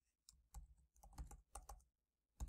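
Computer keyboard being typed on: a quick run of faint key clicks, about four or five a second, sparse at first and closer together after about half a second.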